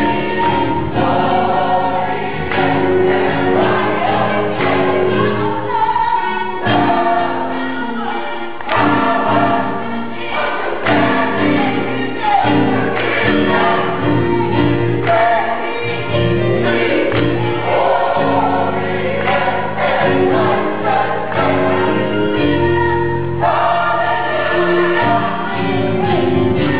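A gospel choir singing a song on stage, with a steady beat behind the voices.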